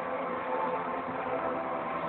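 A singer's amplified voice over recorded backing music, with steady held notes. The sound is muffled.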